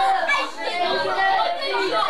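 Many children talking at once in a classroom, an overlapping babble of voices with no single clear speaker.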